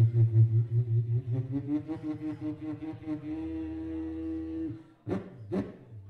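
Beatboxing into a handheld microphone: a long pulsing bass buzz with a hummed tone over it, the tone stepping up into a held note over a low drone that stops about five seconds in. Two sharp kick-and-snare hits follow near the end.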